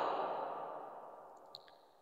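A man's faint exhaled breath, fading out over about a second and a half, followed by a small click and then silence.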